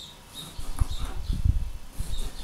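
Kitchen knife cutting through a ripe tomato onto a cutting board: a few dull low knocks in the second half.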